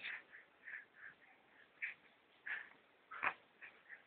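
A baby making a string of faint, short breathy grunts and mouth sounds, with a sharper one about three seconds in.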